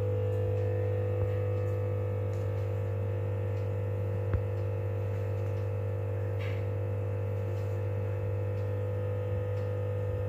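A steady electrical hum, a low tone with a fainter higher tone above it, unchanging throughout, with one faint tick about four seconds in.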